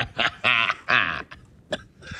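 A man laughing hard in a quick run of short bursts, then two longer whoops, trailing off about a second and a half in.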